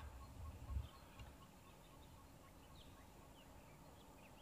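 Near silence, with faint, scattered short bird chirps from the surrounding bush; a brief low rumble in the first second.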